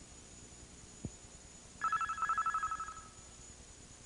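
A single click, then a warbling electronic tone on two pitches, a rapid trill like a telephone ring, lasting about a second and a half.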